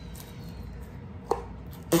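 Slime being gathered off a tabletop and pushed into its plastic tub, with two short sharp clicks, one just past a second in and one at the very end.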